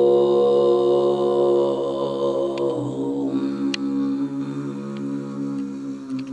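A woman singing one long held note in kargyraa, the Tuvan throat-singing style in which the false vocal folds vibrate along with the true folds, giving a deep growling sub-octave undertone full of overtones. About halfway through, the strongest overtone slides down to a lower pitch as the note carries on.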